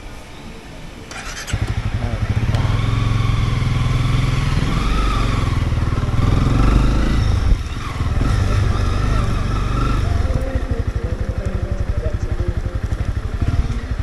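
Motorcycle engine heard from the rider's seat. It is low for the first second or so, then loud as the bike pulls away about a second and a half in. Its pitch rises and falls as it rides on slowly, with a brief easing off about halfway through.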